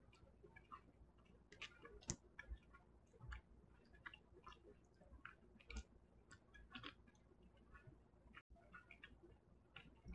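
Near silence, broken by faint, irregular small clicks and mouth sounds of someone eating with a fork.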